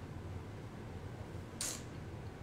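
Quiet room with a faint low hum, and one short, soft, breathy hiss from a man's mouth near the end as he sips whiskey from a tasting glass.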